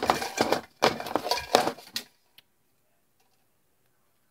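Rustling and clinking of small objects being handled, a busy burst lasting about two seconds that then stops.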